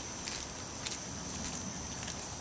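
Outdoor ambience dominated by insects giving a steady high-pitched drone, with a few faint taps.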